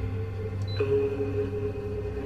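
Tense background score of long held synth notes over a low drone, with a new sustained note coming in just under a second in.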